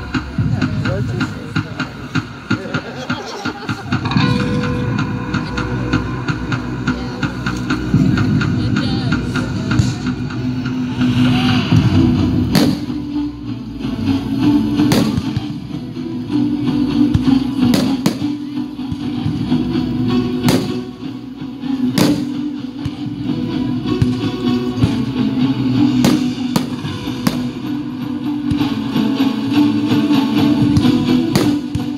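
Music playing loudly with firework shells bursting over it: a series of sharp bangs at irregular intervals through the second half.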